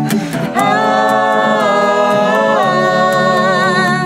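Several voices singing long wordless held notes in harmony, the chord shifting about a second in and again past halfway, with vibrato near the end. Acoustic guitar is faint underneath.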